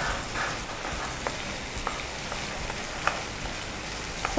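Food sizzling in a frying pan over a gas flame as it is stirred with a spatula, with a few sharp clicks of the spatula against the pan.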